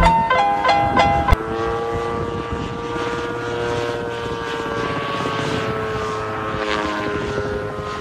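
Marimba-like music notes for about the first second, then a sudden cut to a gyroplane's pusher propeller and engine running in flight: a steady drone whose pitch slowly sinks.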